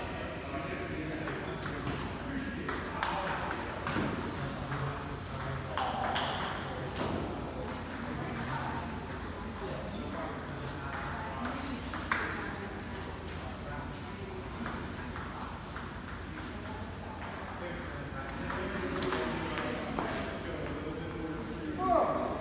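Table tennis ball clicking sharply against paddles and bouncing on the table during rallies.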